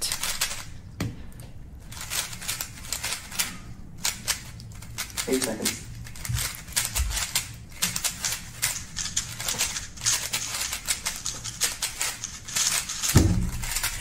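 Speed cube being turned very fast: a rapid run of sharp plastic clicks, densest in the second half. It ends with a heavier thump as the hands come down on a stackmat timer to stop it.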